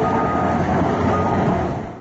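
Excavator's diesel engine and hydraulics running steadily as it digs rubble, with a faint whine over the engine noise, fading out near the end.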